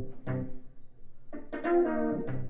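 Live jazz combo music: an Akai EWI 4000s wind synthesizer plays the melody in a brass-like tone over upright bass. The phrase breaks off briefly in the middle, and the notes pick up again, loudest near the end.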